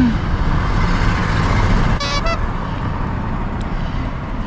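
Steady road traffic rumble, with one brief car-horn toot about two seconds in.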